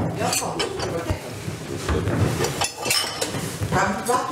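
Dishes and cutlery clinking, with a few sharp clinks and knocks scattered through, beneath people talking.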